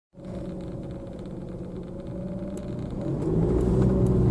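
Car engine and road noise heard from inside the cabin while driving, a steady low hum that grows louder through the second half.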